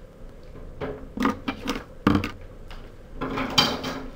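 A wooden ruler and a pair of scissors being picked up and cleared off a tabletop: a few light knocks and clicks, the loudest about two seconds in, then some scraping and rustling near the end.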